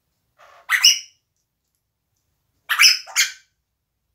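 African grey parrot giving short, harsh calls: one just under a second in, then a quick double call at about three seconds.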